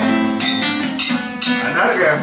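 Acoustic guitar strummed in a run of chords, each strum sharp and ringing on.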